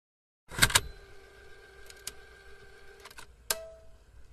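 Sharp clicks over a faint steady hum: two clicks in quick succession about half a second in, lighter ones in the middle, and a last sharp click near the end that leaves a brief fading tone.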